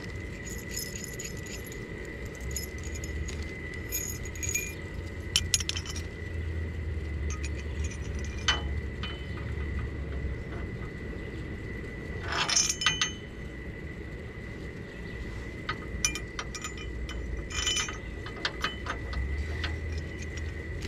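Steel mounting brackets and bolts of a trailer jack clinking and jangling as they are handled and fitted against a steel trailer tongue, in scattered clinks and clatters several seconds apart.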